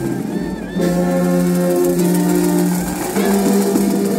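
Brass band led by tubas playing held chords, moving to a new chord about a second in and again near the end.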